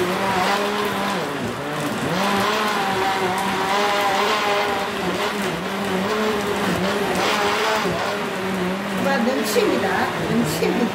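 Electric countertop blender motor running steadily as it blends tangerines with ice, water and honey into juice. Its hum sags in pitch briefly about two seconds in and again near eight seconds as the load of fruit and ice drags on the blades.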